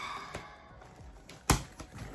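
Cardboard box flaps being pulled open by hand: light scraping and tapping of cardboard, with one sharp snap about one and a half seconds in.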